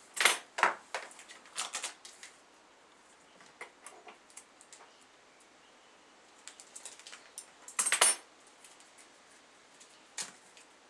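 Handling noise from small hard objects at a table: short bursts of clatter and clicks near the start and again about one and a half seconds in, the loudest near the end, with light scattered ticks between.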